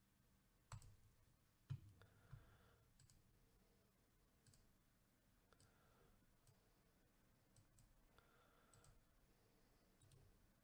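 Near silence broken by faint, scattered computer mouse clicks, a few sharper ones in the first two seconds.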